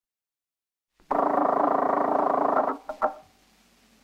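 An old telephone bell ringing once, starting about a second in and lasting about a second and a half with a fast, even rattle, followed by two short clicks as the receiver is picked up.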